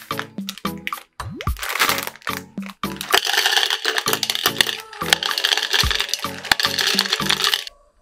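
Background music with a steady beat, over which Maltesers chocolate balls pour and rattle into a plastic chopper bowl: a continuous clatter from about a second and a half in that stops just before the end.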